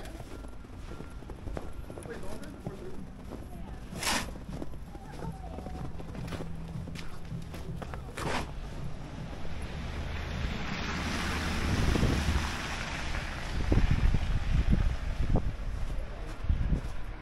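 Footsteps through snow on a city sidewalk, with a vehicle's tyres hissing past on the snowy street about ten seconds in. Near the end the wind buffets the microphone in low thumps.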